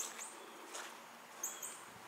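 Faint outdoor ambience with a few short, high chirps, two of them close together about a second and a half in.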